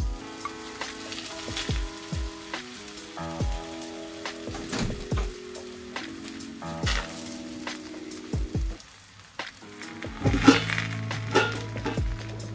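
An aloo paratha sizzling as it cooks in a frying pan, under background music with a steady beat. A brief louder noise comes near the end.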